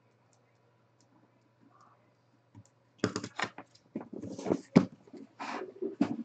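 Cardboard card boxes being handled and moved: a quick run of irregular knocks, taps and scraping from about three seconds in.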